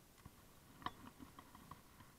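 Near silence broken by a few faint clicks and taps of handling, the sharpest a little under a second in.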